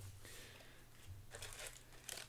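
Faint, brief rustles of trading cards being slid and handled by hand.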